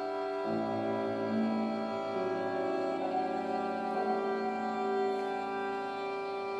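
Violin and piano playing slow, long-held notes in a contemporary classical duo piece; fresh notes enter about half a second in and again around two seconds, thickening the sustained sound.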